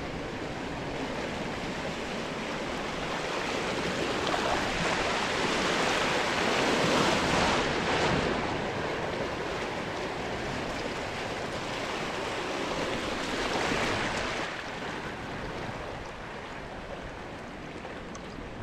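Fast water of a wild-river ride rushing and splashing around a camera held at the surface. It swells to its loudest about seven seconds in, rises again around fourteen seconds as the rider passes through churned, foamy water, then eases to a steadier wash.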